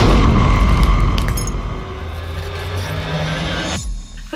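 A sudden deep boom, a cinematic impact hit, whose low rumble fades slowly and cuts off abruptly near the end.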